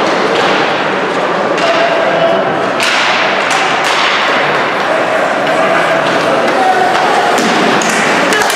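Ice hockey game in a rink: a steady wash of voices and players' calls, with several sharp knocks about three to four seconds in.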